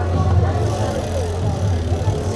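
A steady low engine-like hum with indistinct voices over it.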